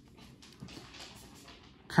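Faint rustle and soft slides of trading cards being moved from one hand to the other.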